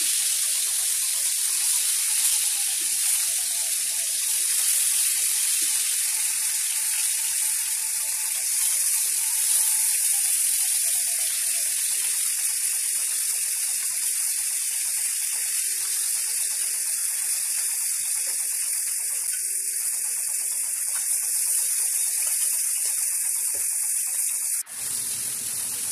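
Sliced onions and ginger-garlic paste frying in hot oil in a wok, a steady bright sizzle.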